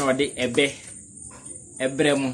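A man speaking in short phrases, with a pause in the middle, over a steady high-pitched chirring of night crickets.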